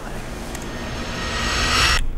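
A whoosh transition sound effect: a rising, airy noise that swells steadily louder and cuts off suddenly at the end.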